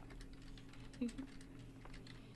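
Faint, irregular clicking of a computer keyboard being typed on, with a short voice sound about a second in.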